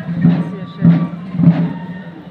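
Procession band music: a slow, even drum beat, one stroke about every 0.6 s, under held wind-instrument notes, with crowd murmur.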